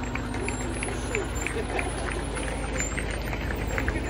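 Fire engine's diesel engine running low as the pumper rolls slowly past, under a steady outdoor crowd background with scattered light ticking sounds.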